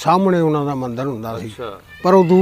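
An old man speaking, opening with one long drawn-out syllable whose pitch slides slowly downward, then shorter words.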